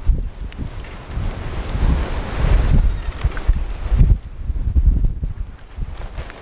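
Wind buffeting the microphone of a handheld camera, an irregular low rumble with bumps and rustling as the camera is moved about.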